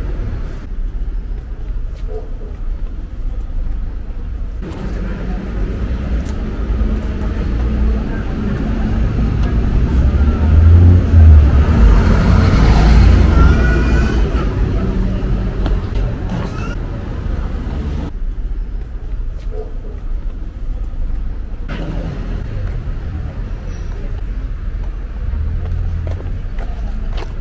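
Street traffic with a motor vehicle passing close by, building to its loudest about halfway through and then fading away over a steady low rumble.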